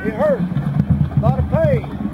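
A man's voice in two short phrases over a steady low hum.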